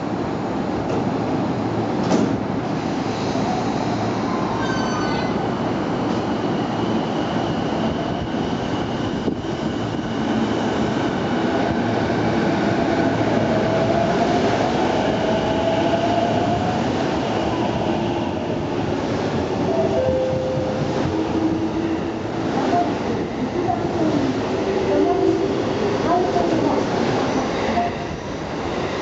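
A JR East E233-5000 series electric train departing the platform. Its doors shut with a thud about two seconds in. The traction motors then give a whine that rises in pitch as the train gathers speed, over steady wheel and rail rumble as the cars roll past.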